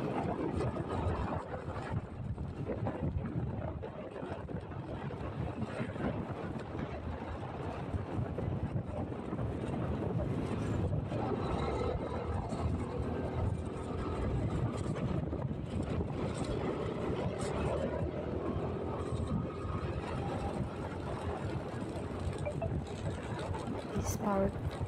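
Wind noise on the microphone of a moving motorcycle, with the motorcycle's engine running underneath as it rides along.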